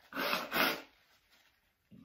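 A person blowing her nose into a paper tissue, two short blows in quick succession about the first second: clearing a runny nose brought on by a very hot chili pepper.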